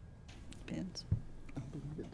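Faint, low voices murmuring away from the microphones, with a soft knock about a second in.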